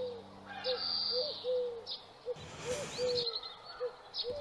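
Birds calling: a run of short, repeated low coos, with thin high chirps among them. A soft rustling noise comes in a little past halfway.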